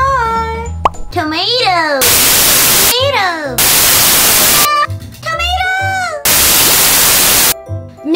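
Edited cartoon sound effects over light background music: swooping up-and-down pitch glides alternating with three loud bursts of static hiss, each about a second long.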